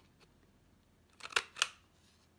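Handheld We R Memory Keepers corner punch cutting a scalloped corner through black cardstock: two sharp clicks close together about a second and a half in.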